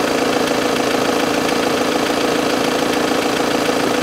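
An engine idling steadily: an even hum with a fast, regular low pulse.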